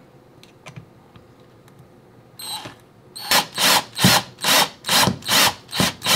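Power drill driving a small screw through a bottle cap into a wooden handle in short trigger bursts. After a few faint handling clicks, a first short run comes about two and a half seconds in, then a quick series of pulses, about two a second.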